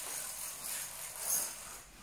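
Roller blind's bead chain rattling lightly as it is pulled to lower the blind.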